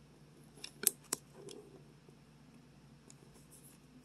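Paper receipts being handled, crinkling: a few sharp crackles about a second in, faint rustling after, and another crackle at the very end.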